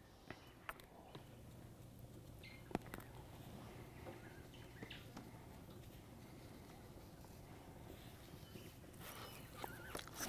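Near silence: a faint outdoor background with a few soft clicks and taps as a raw steak is oiled and rubbed with a spice rub on a plastic cutting board. A faint low hum comes in about a second in.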